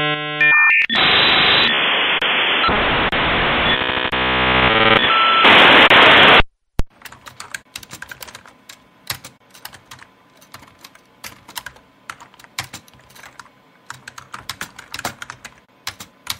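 A dial-up modem connecting: screeching handshake tones and hiss that cut off suddenly about six seconds in. Then come about ten seconds of quick, irregular typing on a computer keyboard.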